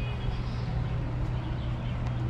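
Outdoor city ambience: a steady low hum of distant road traffic, with faint voices in the background.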